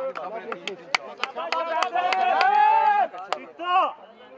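Men's voices calling out and talking, including one long held call and a short call near the end, with several sharp knocks scattered through it.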